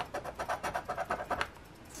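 A round plastic scratcher tool scraping the latex coating off a scratch-off lottery ticket in rapid back-and-forth strokes, several a second, uncovering the next number.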